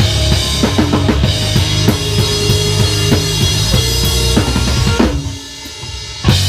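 Rock band playing loud on drum kit, electric bass and electric guitar, the drums driving with kick and snare. About five seconds in the band stops abruptly, leaving a single held note ringing in the gap.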